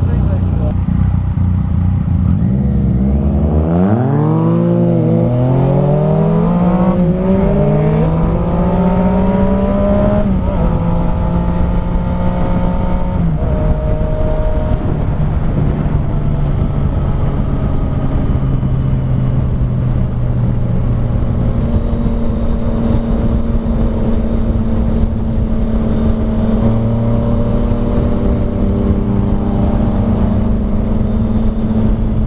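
Yamaha FZ-09's inline three-cylinder engine pulling away from a stop, its pitch rising and dropping back at each upshift, then settling to a steady cruise with wind rush on the helmet camera.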